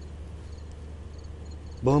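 A pause in speech filled by a steady low hum, with a man's voice starting again near the end.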